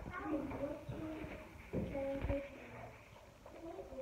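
A few short, soft vocal murmurs with pauses between them, and a low bump about two seconds in.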